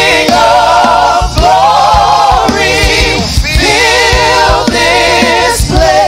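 Gospel praise team singing together in harmony into microphones, holding long notes with vibrato in phrases of about a second each, over a low instrumental backing with drum hits.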